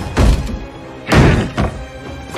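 Tense film score with two heavy thuds, one just after the start and one about a second in.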